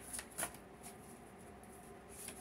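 Tarot cards being handled as a card is drawn: two soft, quick card flicks in the first half second, then quiet.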